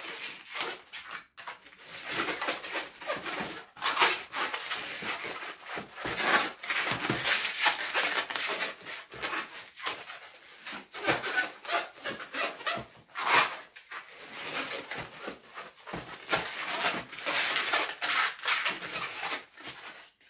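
Latex 260 modelling balloon squeaking and rubbing as it is squeezed and twisted into bubbles and pinch twists, in spells broken by brief pauses.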